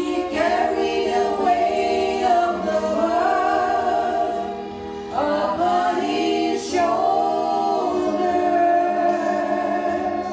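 Three women singing a gospel song together into handheld microphones, in two long phrases with a short break about five seconds in.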